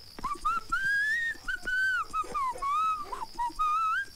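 A person whistling a tune: a string of short notes that glide up and down, one clear pitch at a time.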